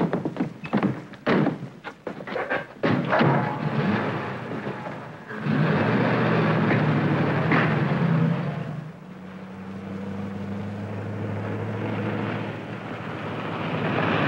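Several thunks and car doors shutting. About five seconds in, a car engine starts and runs loudly as the wood-bodied station wagon pulls away. It settles to a quieter, steady drone for the last few seconds.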